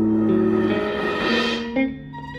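Live trio of electric guitar, viola and drums playing: held, overlapping notes that change pitch in steps, with a rushing swell that builds about a second in and cuts off near the end.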